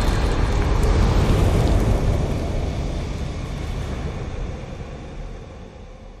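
Low, noisy rumble of an animated logo's fire-themed sound effect, the tail of a boom, fading away steadily over several seconds.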